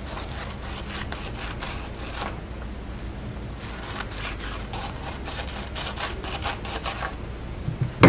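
Scissors cutting through a book page: a quick run of short snips, pausing briefly around three seconds in.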